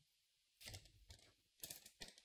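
A few faint computer keyboard keystrokes: a couple of single taps, then a short cluster of taps near the end.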